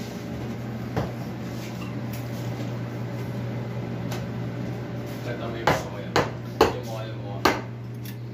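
A metal spoon clinking sharply against a drinking glass four times in the last few seconds, over a steady low hum.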